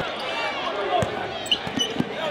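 Basketball bouncing on a hardwood gym floor, a few sharp knocks about a second in and again near the end, over the chatter of voices in the gym.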